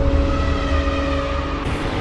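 Cinematic intro sound effect: a loud, deep rumble under a few steady held tones, with a new hit near the end as the title appears.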